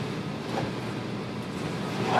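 Steady low hum with hiss, with no distinct knocks or clicks.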